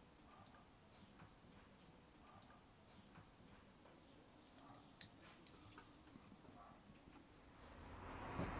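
Near silence: faint room tone with a few faint, irregular ticks.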